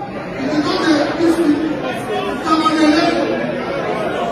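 Speech: a man talking into a microphone in a large hall, with chatter from the audience.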